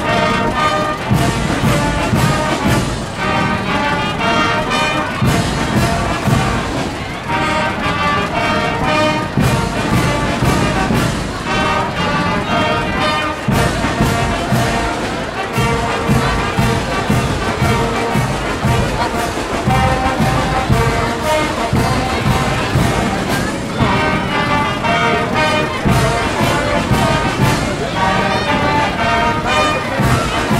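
Brass marching band playing a tune, with trumpets, trombones and sousaphones over a steady beat.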